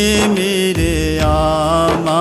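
Devotional singing of an Urdu dua: sustained, wavering vocal notes held without clear words, with other voices layered beneath.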